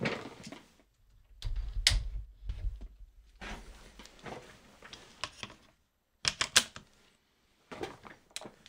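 Handling noise of a camera rig being unclamped and snapped onto a tripod's quick-release mount. Rustling and a low rumble come from hands on the rig, with scattered sharp clicks and knocks of the mount hardware, the loudest about two seconds in and again about six seconds in.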